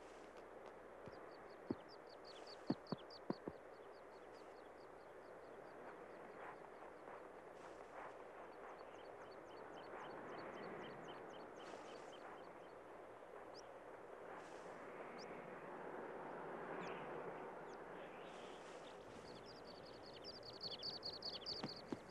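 Faint outdoor natural ambience with small birds chirping in quick repeated trills, loudest near the end, and a few single short whistles. A few soft taps come about two to three seconds in.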